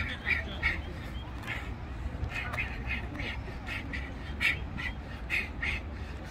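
Ducks quacking: short calls coming in quick runs of two or three, over a steady low rumble.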